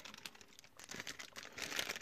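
Faint rustling and light clicking of small hammered copper jump rings being moved and set down by hand on a sheet of paper. The clicks are sparse at first and come thicker in the second half.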